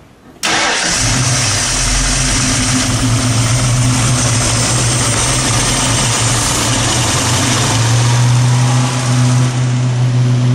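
Boss 302 small-block V8 in a 1970 Mustang, coming in abruptly about half a second in and then running steadily at an even, unchanging speed.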